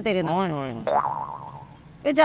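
A comic "boing" sound effect: a springy twang that starts suddenly just under a second in, falls in pitch and dies away.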